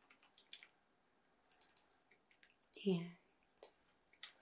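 Quiet, scattered clicks of typing on a computer keyboard, in short runs of a few keystrokes.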